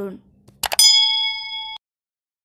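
A couple of quick clicks, then a bright bell-like ding that rings on steady tones for about a second and cuts off suddenly. It is the notification-bell sound effect that marks the bell icon being switched on.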